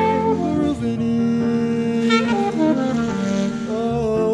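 Alto saxophone playing a melodic phrase that steps from note to note over sustained chords from a Nord Electro 6 HP stage keyboard.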